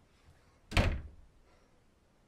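A wooden interior door thudding once, heavily and sharply, about three-quarters of a second in, with a short ring-out.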